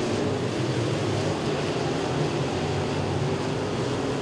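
A pack of open-wheel dirt-track modified race cars running their V8 engines at racing speed around the oval, a steady blended engine noise.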